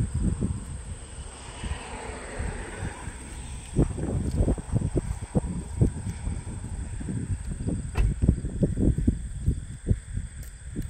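Wind buffeting the microphone in irregular low gusts that rise and fall.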